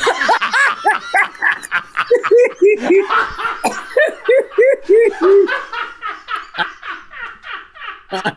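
Several people laughing hard at a joke's punchline, voices overlapping. Through the middle there is a run of short 'ha-ha-ha' bursts, about three a second.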